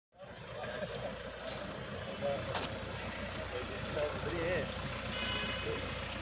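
A vehicle engine idling with a steady low rumble, under faint voices of men talking.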